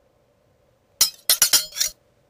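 A quick run of sharp, ringing clinks, like hard objects striking, lasting just under a second and starting about a second in.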